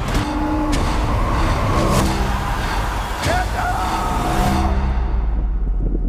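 Film-trailer action sound effects: a loud, dense rumble broken by sharp hits, with a held tone rising briefly in the middle. About five seconds in, the higher sounds fall away, leaving a low rumble.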